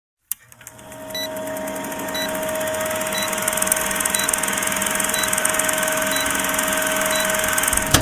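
Vintage film-countdown sound effect: a film projector's fast, steady clatter and whir with a humming tone. A short high beep sounds once a second, seven times, as the leader counts down, and everything cuts off at the end.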